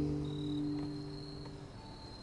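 A strummed acoustic guitar chord ringing out and slowly fading. Under it is a faint, steady, high insect trill that comes through as the chord dies away.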